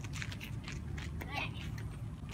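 A child's short call about halfway through, over a steady low rumble and scattered light clicks, during an outdoor children's badminton game.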